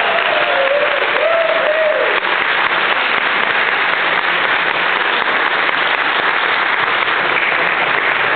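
Congregation applauding steadily in a large room, with a voice or two over the clapping in the first two seconds.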